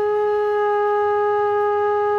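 Bansuri, the Indian bamboo transverse flute, holding one long steady note.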